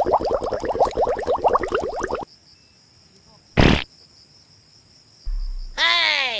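Comedy sound effects edited over the footage. A rapid pulsing chatter stops abruptly about two seconds in, a single sharp burst follows, and near the end comes a falling, cartoon-style slide in pitch.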